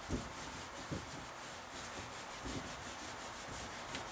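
Eraser wiping a whiteboard: faint scrubbing strokes with a few soft knocks of the eraser against the board.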